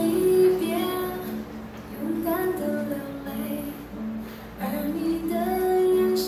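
A song playing: a high singing voice, woman's or child-like, sings held notes in a melodic phrase over an instrumental backing.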